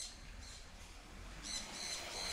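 Small birds chirping: a short cluster of high chirps right at the start and another near the end, over a faint low rumble.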